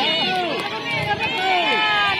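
Spectators and players shouting over one another, many raised voices at once, several calls sliding down in pitch.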